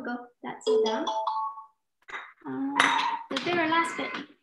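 A woman's voice.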